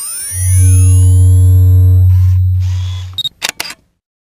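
Intro sound effect: a loud, deep hum comes in about a third of a second in under fading high gliding tones and dies away after about three seconds, followed by a few quick camera-shutter clicks near the end.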